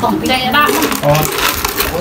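Light clinking and rattling of plastic cups and tableware being handled, under people talking.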